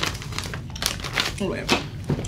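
Paper crinkling and rustling as a folded sheet of paper notes is handled and unfolded: a run of short, irregular crinkles, with a brief bit of voice near the end.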